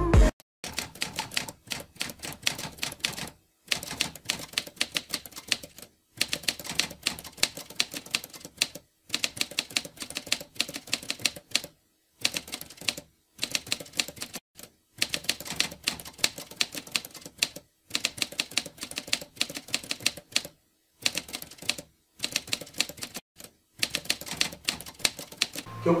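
Typewriter keys clacking in fast irregular runs, broken by a short pause every two to three seconds.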